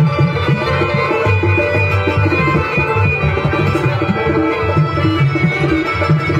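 Harmonium playing sustained reed chords and melody over a quick, even rhythm on hand-played dholak barrel drums: live South Asian folk music.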